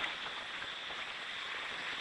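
A steady, even hiss with no pitch or rhythm: a noise layer in a musique concrète piece, heard between the narrator's phrases.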